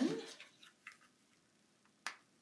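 A few faint, short clicks and taps from a chalk ink pad and papers being handled on a craft table, with near quiet in between.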